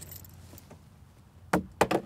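A plastic motor-oil bottle, thrown, strikes and clatters onto pavement: a few quick, sharp knocks in the last half second.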